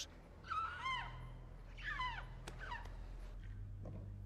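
An animal's short, high, squeaky calls, three times, each rising and falling in pitch, over a low steady hum.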